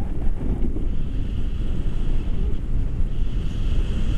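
Wind buffeting a camera's microphone on a tandem paraglider in flight: a steady, loud low rumbling rush of airflow.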